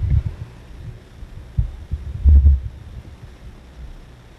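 Camera handling noise: irregular low, dull thumps and rumble as the camcorder is swung around, the loudest a little past the middle.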